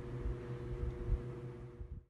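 Room tone: a low rumble with a faint steady hum, cut off abruptly to dead silence at the end, as at an edit.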